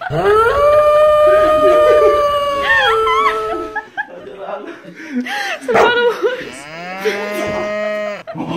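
A person's long, drawn-out moo-like cries: one held call of about three and a half seconds, then a second, lower call near the end.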